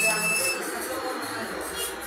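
Indistinct voices with background music, loudest in the first half second.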